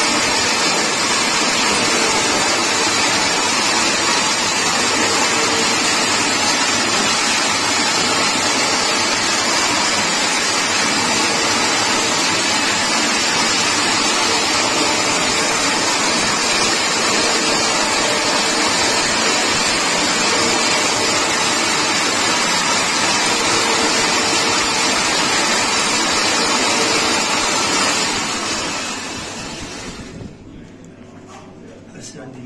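Toroidal transformer winding machine running steadily, its toothed shuttle ring spinning through the core as copper wire is wound on; a loud even whirring that dies away near the end.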